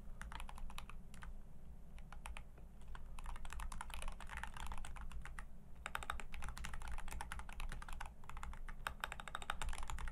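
Rapid typing on a computer keyboard, close to the microphone, in several quick flurries of key clicks with short pauses between them, over a steady low hum.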